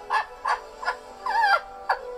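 People laughing hard, in short rapid bursts of about three a second.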